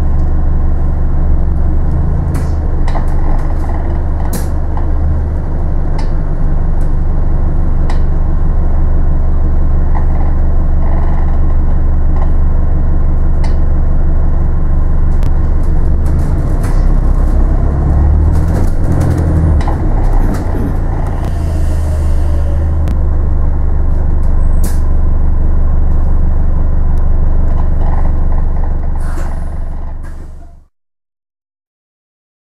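Inside a moving city bus: the engine's steady low drone with frequent small rattles and clicks from the bodywork, the engine note changing a little past halfway, and a short hiss of air about two-thirds of the way in.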